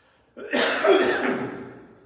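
A man coughing into his raised arm: one loud burst starting about half a second in and fading away over about a second.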